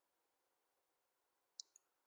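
Near silence, with a single faint short click about one and a half seconds in.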